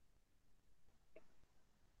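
Near silence: room tone, with one faint short tick about a second in.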